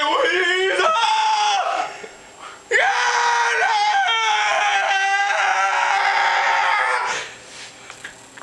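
A man screaming at the top of his voice: a short scream, then after a brief pause a long one of about four seconds, held on one high note that sinks slightly before it stops.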